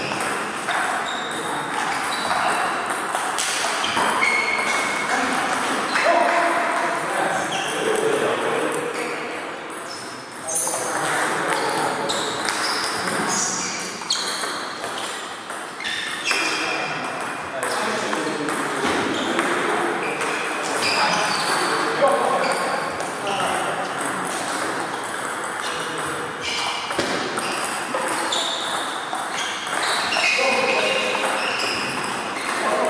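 Table tennis balls clicking off bats and the table in rallies, short sharp ticks coming irregularly throughout, over a background of voices.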